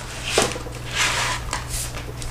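Rustling and shuffling of paper and craft supplies being handled and rummaged through, in two short stretches, over a low steady hum.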